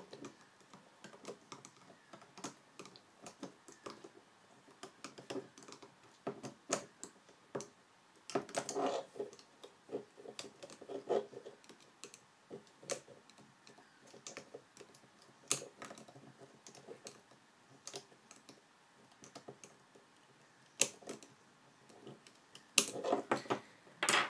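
Scattered light clicks and taps of a metal-tipped loom hook and rubber bands against the clear plastic pegs of a rubber-band loom, as bands are hooked up and over, row by row.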